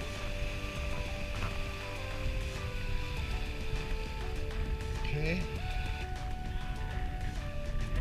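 Background music: slow, long held notes that step from one pitch to the next, over a steady low noise.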